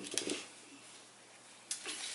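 A cough trailing off with a few small clicks, then quiet room tone, broken by a short noise near the end.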